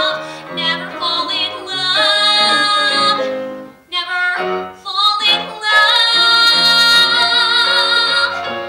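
A young woman singing a musical-theatre song solo into a microphone with piano accompaniment; she breaks briefly about halfway, then holds a long note with vibrato to the end.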